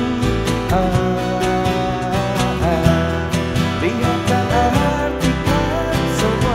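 Live acoustic band music: a male lead voice singing over strummed acoustic guitars.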